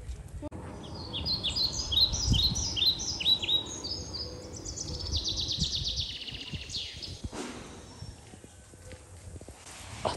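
A songbird singing: a run of quick downward-sliding chirps, then a fast trill that ends about seven seconds in, over low rumbling street and wind noise.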